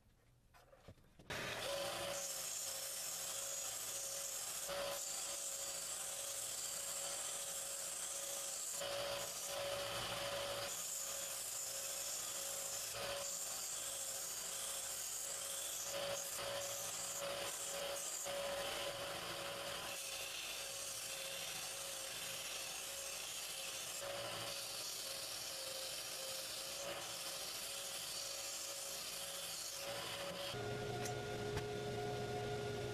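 A small bench belt sander with a narrow belt runs with a steady hum. Wood is pressed against the moving belt and sanded. The sound cuts in suddenly about a second in.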